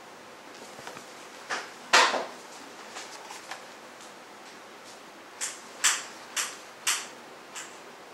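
Kitchen noise: a string of sharp knocks and clunks of household clatter, the loudest about two seconds in, then five quicker ones about half a second apart in the second half.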